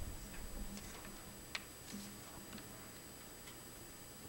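Quiet room tone with a few faint, irregular clicks and taps.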